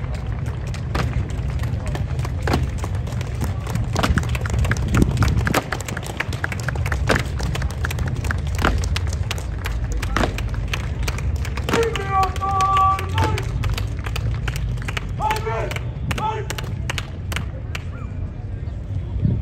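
Sharp, irregular knocks of Evzones guards' hobnailed tsarouchia shoes striking the stone pavement in their ceremonial steps, over a steady low rumble and crowd voices. A voice calls out briefly about twelve seconds in and again about fifteen seconds in.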